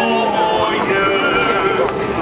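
Voices singing a hymn, holding long notes that waver slightly.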